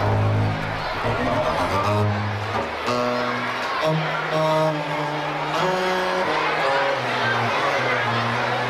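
Baroque string orchestra playing, with held string notes over a low bass line that moves from note to note.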